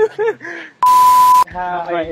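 A single steady beep tone, about half a second long, starting just before the middle and cutting off suddenly. It is the loudest thing here, and short bursts of voice come before and after it. It is an edited-in bleep of the kind used to cover a word.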